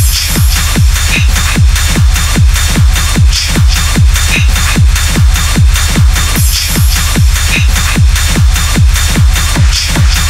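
Hard techno track at 150 BPM: a kick drum on every beat, about two and a half a second, each kick dropping in pitch, under dense hi-hats and high percussion.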